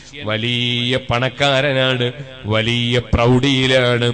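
A man's voice chanting a religious recitation in long, held notes, in about four phrases with short breaks between them.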